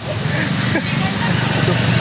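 City street traffic noise: a steady low engine rumble from vehicles on the road, with faint voices in the background.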